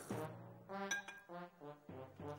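Background music with a single short glassy clink about a second in, a tea glass being set down or knocked.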